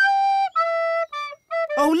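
A recorder playing a short, simple tune: a held note, then three shorter notes stepping lower.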